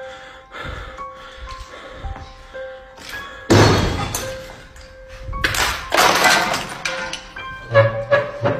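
Background music with steady held tones, broken by two loud, noisy thumps about three and a half and five and a half seconds in.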